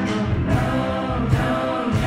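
Live rock band playing, with two women singing held notes together over electric guitar, bass and drums.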